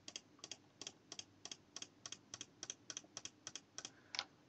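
Computer mouse button clicked over and over, about three clicks a second, each press and release heard as a pair of faint ticks.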